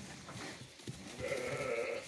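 A Latxa sheep bleating once, a single drawn-out call starting a little over a second in, amid the faint shuffling of the flock.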